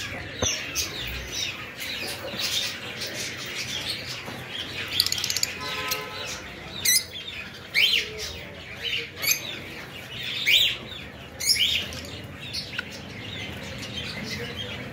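Many caged small parrots, cockatiels and lovebirds, chirping and calling together. Several louder, sharp calls stand out in the second half.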